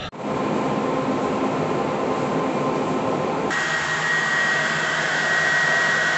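Hand-held hair dryer running steadily: a continuous blowing noise with a motor hum. About halfway through the sound shifts and a higher steady whine joins it.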